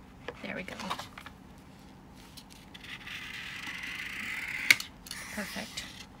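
Craft knife blade scoring a slit in a binder's thick 10-mil laminate cover: a scraping that lasts about two seconds from about halfway in and ends in one sharp click.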